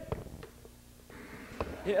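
A lull in the commentary: faint room noise and hum with a few soft knocks, then a man's voice calls out right at the end.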